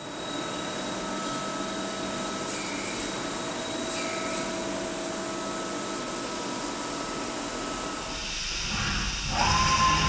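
Heckert HEC 800 horizontal machining centre running: a steady hiss with faint humming tones. Near the end it grows louder, with a low rumble and a whine that rises, holds briefly and drops as the spindle works inside the machine.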